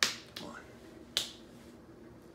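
Three sharp finger snaps: two in quick succession at the start, then a third just over a second in.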